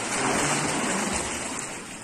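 Water splashing as two swimmers kick and stroke through a pool, an even rushing noise that is loudest over the first second and a half, then eases.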